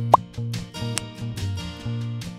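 Light background music with plucked notes over a steady bass line, with a brief rising blip sound effect just after the start and a sharp click about a second in.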